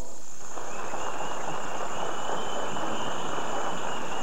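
Studio audience applauding steadily, starting about half a second in.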